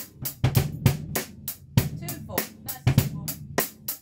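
A drum kit playing a steady groove: quick stick strokes over bass drum thumps, with the snare played cross-stick, the stick laid across the head and clicked against the rim.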